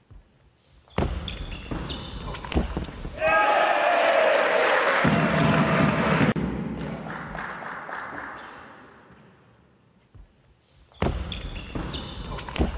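Table tennis rally: the ball clicks sharply off bats and table, with short high shoe squeaks on the court floor. About three seconds in, a player lets out a loud shout and the hall fills with cheering and applause that fades out. Near the end the same rally sounds begin again.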